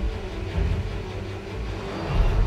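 Film trailer soundtrack: a deep, steady rumble with a long held note above it, between lines of dialogue.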